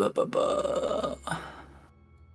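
A person's voice making one loud, drawn-out non-word sound, lasting about a second and a half before it fades, over faint background music.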